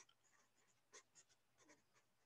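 Very faint pencil writing on paper: a few light scratching strokes in near silence.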